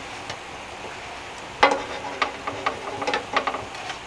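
Spatula clicking and scraping against a nonstick frying pan as slices of bread are lifted and turned in melted butter: a string of sharp clicks starting about one and a half seconds in, the first the loudest, over a faint steady sizzle.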